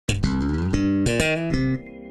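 Short sponsor logo jingle: a loud, quick run of separate notes, each starting sharply. Near the end it stops suddenly, leaving a soft ringing chord.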